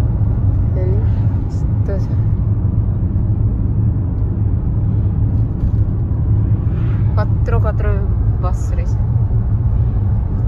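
Steady low rumble of road and engine noise inside a moving vehicle's cabin.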